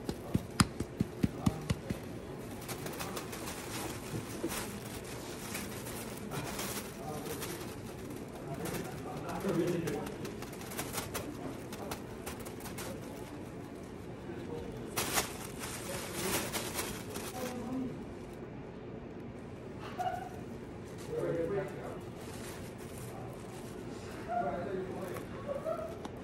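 Thin plastic grocery bag crinkling and rustling as hands rummage inside it, with a quick run of sharp clicks in the first couple of seconds.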